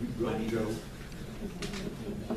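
Indistinct low voices of people in the room, with a short burst of unclear talk near the start and then a quieter murmur.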